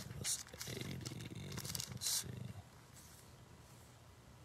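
A man's low, indistinct mumbling under his breath for about two and a half seconds, with a couple of short breathy noises, then quiet room tone.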